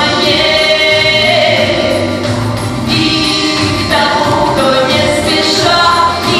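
A woman sings a song into a handheld microphone over instrumental accompaniment, holding long notes.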